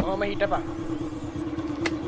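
Motor scooter engine running with a steady hum. A short vocal sound comes just after the start, and there is one sharp click near the end.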